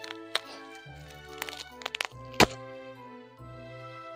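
Background music with sustained notes, over which come several sharp clicks and knocks, the loudest a single knock a little past halfway, as plastic-wrapped metal support poles are handled and unwrapped.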